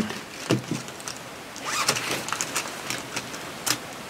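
Quiet studio room tone with small handling clicks and rustles: a cluster about two seconds in and one sharper click near the end.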